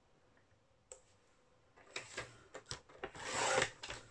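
A paper trimmer's scoring blade drawn along its track, scoring a fold line into a sheet of scrapbook paper. There is a small click about a second in, then a scraping rasp in the second half, loudest shortly before the end.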